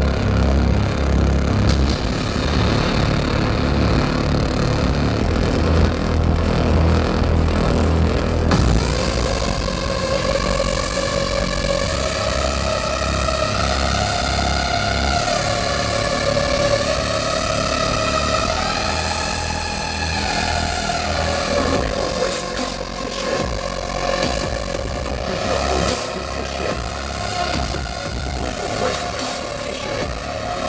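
Loud electronic dance music from a DJ set played over a festival sound system. A heavy kick-and-bass beat drops out about eight seconds in for a breakdown carried by a gliding synth melody, and the bass beat returns near the end.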